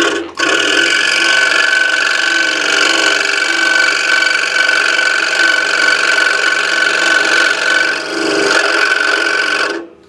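Scroll saw running, its fine blade cutting through a coin held by friction in a wooden holder, giving a loud, steady whine of several fixed pitches. It cuts off abruptly near the end.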